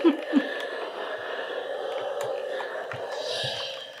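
Steam iron hissing steadily as it puts out a lot of steam to press wool fabric, with a short louder burst at the start; the hiss fades away near the end.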